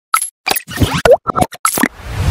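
Channel intro sound effects: a quick run of about eight short plopping pops in two seconds, some with fast sliding pitch.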